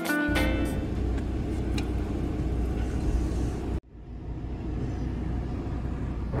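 Guitar music ends just after the start and gives way to steady road and engine rumble heard from inside a moving car. About four seconds in the sound cuts off abruptly, then a quieter steady rumble follows.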